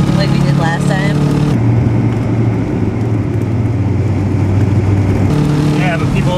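Subaru EA82 flat-four engine running, heard from inside the wagon's cabin. It holds a steady hum whose note drops lower about a second and a half in and rises again about five seconds in.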